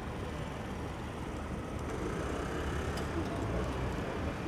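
A car's engine running close by with a low steady rumble, with street noise and faint voices around it.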